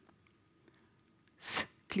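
A pause in a woman's talk: near-silent room tone, then about one and a half seconds in, a short sharp intake of breath into the microphone before she goes on speaking.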